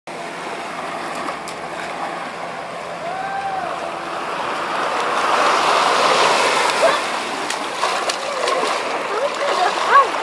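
Small waves breaking and washing up on a sandy beach, swelling louder for a few seconds in the middle. Voices call out briefly now and then.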